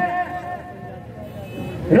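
A man's amplified voice trails off into a pause in a speech to a crowd, with a low, steady outdoor rumble underneath; the voice starts again right at the end.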